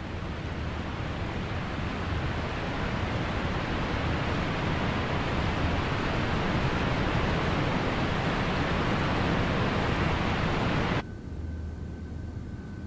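Rushing of a waterfall, a sound effect that swells over the first few seconds and holds steady and loud. It cuts off suddenly about a second before the end, leaving faint room hum.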